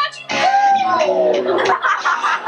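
A person's voice drawing out one long falling note for over a second, starting just after the beginning, with rough noisy sound underneath it.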